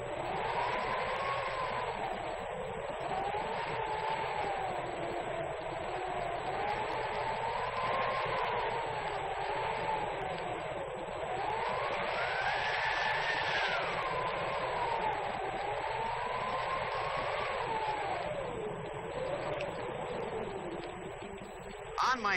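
Hurricane-force wind howling: a whistling tone that slowly wavers up and down with the gusts over a steady rushing hiss, rising highest a little past the middle.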